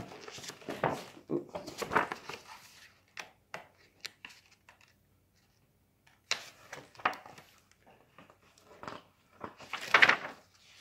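Paper rustling as the pages of a picture book are handled and turned, in short bursts with a quiet gap in the middle.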